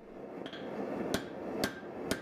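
Hand hammer striking a red-hot Damascus power-core steel blade on an anvil while forging its profile: a light tap, then two sharp ringing blows about half a second apart, over a steady rushing noise.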